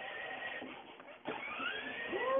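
Small electric motor of a battery-powered ride-on toy car whirring as it drives. It drops out briefly just past a second in, then starts again suddenly.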